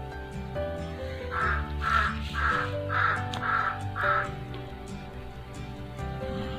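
A crow cawing six times in a steady series, about two calls a second, over soft background music with sustained notes.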